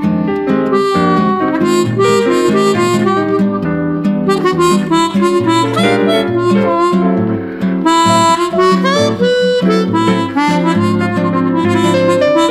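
Harmonica playing a melody with bent notes over guitar accompaniment and a bass line.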